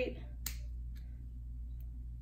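Small scissors snipping through a paper sticker: one sharp snip about half a second in, then fainter snips near one second and near the end, over a steady low hum.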